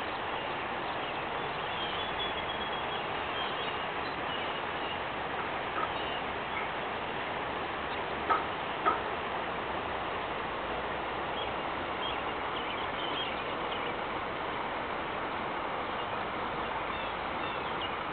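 Outdoor background ambience: a steady hiss of noise with faint, scattered small-bird chirps, and two short sharp calls a little over halfway through.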